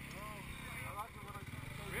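Dirt bike engines idling steadily, a low even hum, with people talking in the background.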